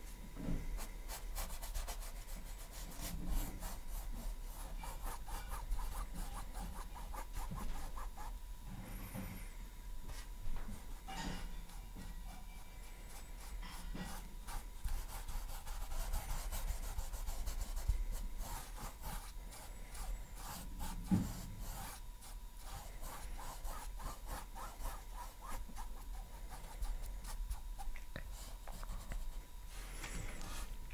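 Paintbrush bristles scrubbing acrylic paint onto a stretched canvas, a faint, steady run of dry scratchy strokes while a base layer is blocked in, with a few soft knocks along the way.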